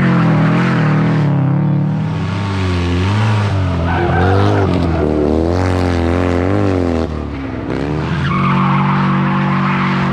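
Rally car engines driven hard, their pitch climbing and dropping again and again through revs and gear changes, with tyre and gravel noise as the cars slide through the corners.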